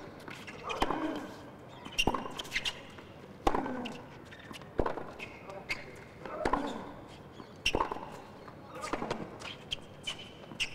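Tennis ball struck back and forth with rackets in a baseline rally, a sharp hit about every 1.3 seconds. Several of the shots come with a player's short grunt.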